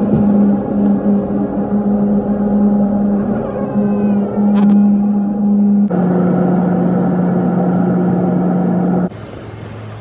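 Airliner engine and cabin noise heard from a window seat: a loud, steady drone with a low hum. About six seconds in it cuts abruptly to a similar, slightly lower-pitched drone, which stops suddenly about nine seconds in.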